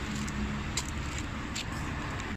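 Steady outdoor urban background noise: a low rumble with a steady mechanical hum, like traffic or a running engine nearby, with a few light clicks and knocks about halfway through.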